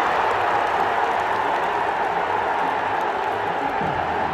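Large football stadium crowd making a steady din of many voices, reacting to a near miss on goal, easing off slightly.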